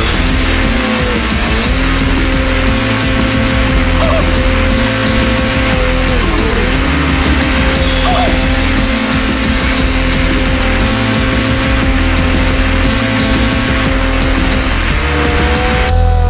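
Snowmobile engine running at a steady high pitch under load in deep powder, dropping briefly about six seconds in and climbing again near the end.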